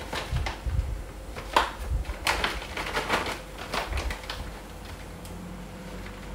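Irregular light clicks and taps with soft low knocks as things are handled, thinning out and going quieter after about four and a half seconds.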